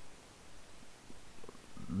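Faint steady background hiss and room noise, with a few soft low sounds.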